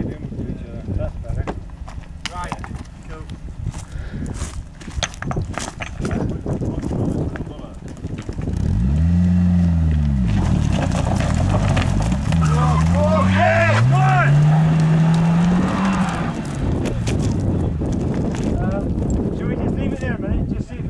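A stuck car's engine revving hard while its wheels spin in loose sand and gravel. It comes in loud about a third of the way through, rises and falls in pitch once, then climbs steadily for several seconds before easing back.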